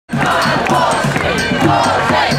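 Improvised drumming on makeshift objects, a steady beat of about four hits a second, under a crowd of protesters shouting and chanting.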